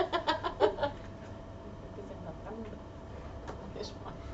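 A woman laughing in a quick run of short bursts during the first second, then only low room noise.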